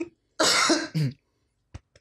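A man coughing twice in quick succession, the first cough longer and the second shorter, as he runs out of breath from a fit of laughter.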